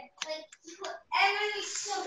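A child's voice: short sounds early on, then a longer, louder held stretch from about a second in.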